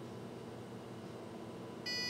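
Handheld positive material identification (XRF) analyzer giving one short electronic beep near the end, signalling that its chemical composition test is finished. Before the beep there is only faint steady room hum.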